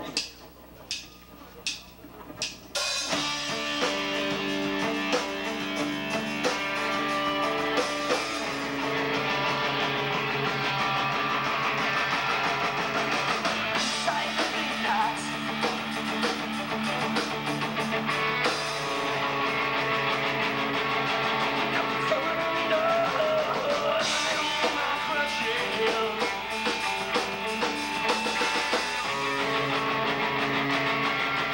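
Four evenly spaced clicks count the song in, then a punk rock band comes in loud: distorted electric guitars through Marshall amps, bass and drum kit, taped live in a club.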